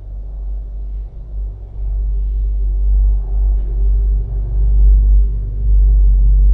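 A deep, sustained low rumble with steady held tones above it, swelling in loudness over the first couple of seconds and then holding: an ominous drone from a film trailer's soundtrack.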